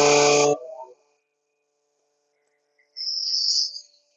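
Paper folder's warning buzzer sounding one steady note for just under a second as the start button on its control panel is pressed, followed by a short hiss near the end.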